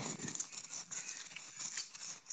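Faint, irregular patter of footsteps and rustle from someone walking on a paved path with a phone in hand.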